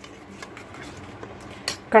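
Metal spoon stirring a spice paste in a little water in a small steel bowl: faint scraping and light clinks, with one sharper click near the end.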